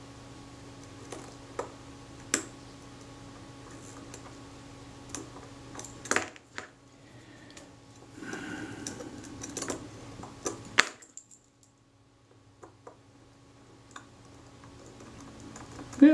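Small metal tools clicking and tapping against the parts of a camera leaf shutter as a screw and gear train are fitted. The clicks come irregularly, sharper about six seconds in and again about eleven seconds in, with some rustling of handling between them. A faint steady hum sits underneath and drops away about eleven seconds in.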